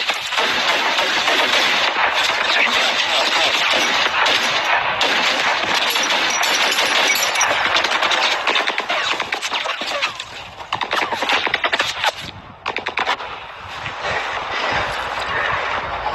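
Heavy automatic gunfire from a film firefight, continuous and dense for about ten seconds, then thinning into separate shots and short volleys with gaps between them.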